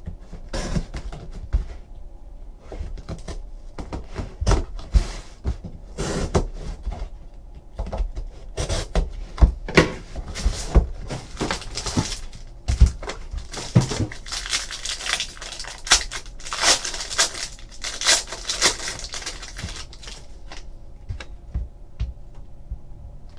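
A cardboard box of trading cards being cut open with a box cutter and torn open by hand, then cards pulled out and stacked on a table: irregular taps and knocks with ripping and rustling, busiest about two thirds of the way through.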